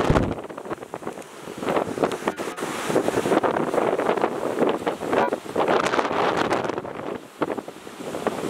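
Strong typhoon wind blowing on the microphone in gusts, rising and falling, with heavy surf breaking against the sea wall underneath.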